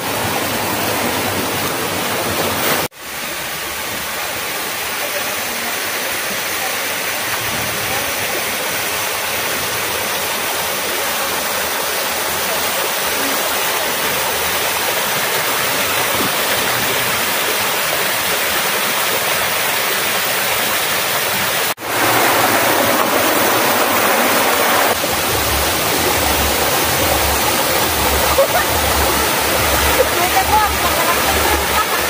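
Small waterfall cascading over rock slabs: a steady rush of falling water. It cuts out briefly twice, about three and about twenty-two seconds in, and is a little louder after the second break.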